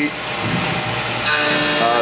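Tormach PCNC 1100 CNC mill cutting 6061 aluminium with a 3/8-inch two-flute carbide end mill, a steady rushing hiss of cutting and flying chips. About one and a half seconds in, a steady whine joins it.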